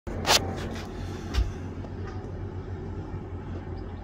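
Steady low drone of a tugboat engine towing a barge, with a sharp click a little after the start and a softer knock about a second later.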